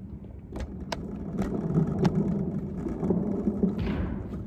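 Handling noise from the recording phone being picked up and turned: a low rubbing rumble with several sharp clicks and knocks in the first half.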